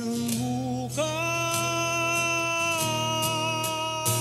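A duet song: a singer holds a long note that steps up in pitch about a second in and is sustained for nearly two seconds.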